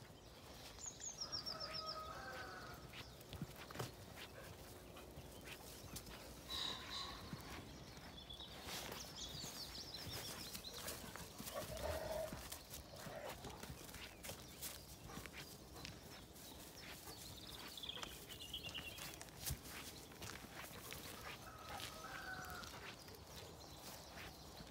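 Faint farm ambience with scattered short animal calls, among them distant sheep bleating. Light knocks and rustles come from dogs handling a big stick in the grass.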